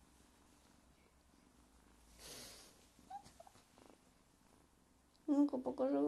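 A domestic cat purring faintly close to the microphone. A short breathy rush comes about two seconds in, and a brief high little chirp a second later.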